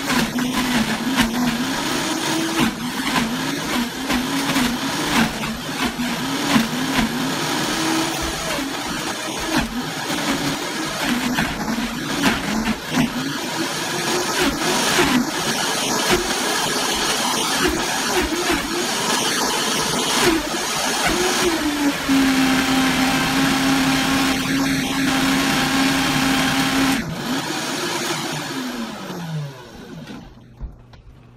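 Vitamix blender motor running at high speed, blending pineapple rinds, orange peels and fruit cores into a thick sludge; its pitch wavers as chunks load the blades and a tamper pushes them down. Late on it holds a steady pitch for several seconds, then switches off and winds down with a falling pitch near the end.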